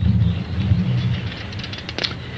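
A steady low rumble with a hum, with faint rapid ticking in its second half.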